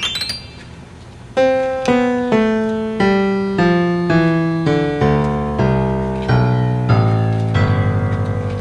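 Solo piano music. A quick upward run ends just after the start and is followed by a short lull. From about a second and a half in, notes are struck about twice a second in a falling line, filling out into fuller chords toward the end.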